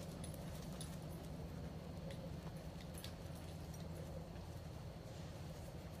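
A dog's collar tags and leash hardware jingling faintly a few times as the dog moves, over a steady low hum.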